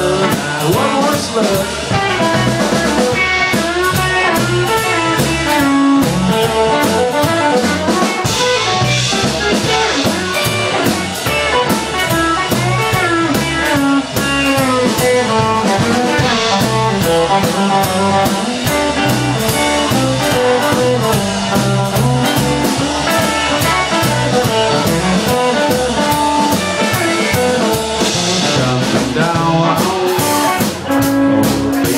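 Live honky-tonk country band playing an instrumental break: guitar carrying the melody over an upright bass and a drum kit keeping a steady beat.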